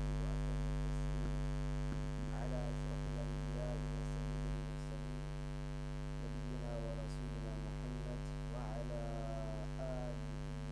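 Steady electrical mains hum on the recording, a buzz made of many even overtones, dropping slightly in level about halfway through. A few faint, brief wavering sounds come and go over it.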